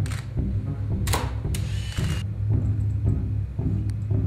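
Background music with a steady low rhythm, over which a studio camera sounds: a sharp mechanical click at the start, another about a second in, then a short whirring run of about two-thirds of a second.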